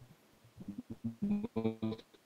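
A voice coming through a failing video-call connection, breaking up into short, choppy fragments that cut in and out.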